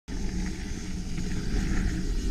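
Ride noise from a mountain bike on a dirt forest singletrack: tyres rolling over the trail and wind across the action camera's microphone, a steady noisy rush strongest in the low end, with a few faint rattles.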